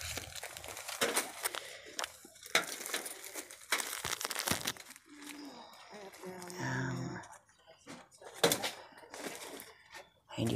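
Plastic-wrapped packages crinkling and crackling in a run of short rustles as they are grabbed off the peg hooks and handled, with a brief murmur of a voice partway through.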